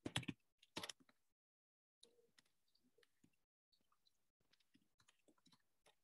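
Typing on a computer keyboard: quick, irregular keystroke clicks. A few are louder in the first second, then faint, steady tapping follows.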